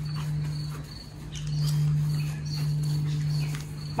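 Outdoor ambience: a steady low hum with an insect chirping in a high, pulsing tone above it, and faint soft steps on grass.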